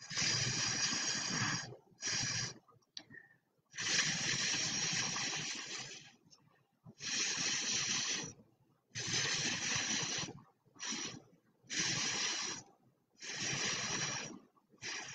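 Puffs of breath blown hard through a drinking straw onto wet acrylic paint on a canvas. There are about eight breathy puffs with short silent gaps between them; the longest lasts over two seconds and a few are brief.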